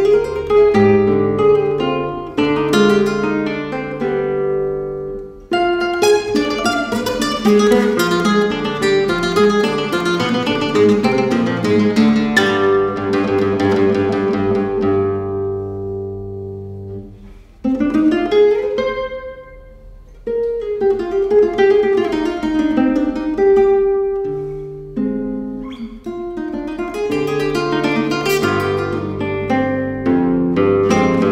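Classical guitar played solo, fingerpicked melody over sustained bass notes in flowing phrases, with a short quieter break and an upward slide about two-thirds of the way in.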